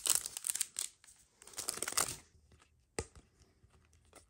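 Foil wrapper of a Panini Mosaic soccer trading card pack being torn open and crinkled, in two spells over the first two seconds or so. A single sharp click follows about three seconds in.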